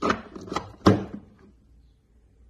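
Milwaukee M12 battery pack being pushed onto a plastic battery capacity tester: three hard plastic clacks within about the first second, the last one the loudest.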